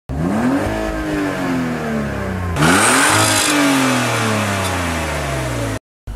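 Car engine revved twice while parked: each time the pitch climbs quickly and then falls slowly back toward idle, the second rev with more intake and exhaust hiss. The sound cuts off suddenly near the end.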